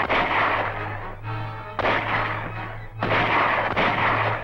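Film-soundtrack gunfire: loud gunshots come in about four bursts, at the start, near two seconds, near three seconds and near the end, each trailing off in an echo. Background music plays under and between the shots.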